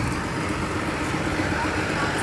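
Steady city street traffic noise, with a vehicle engine running as a minibus drives along the road.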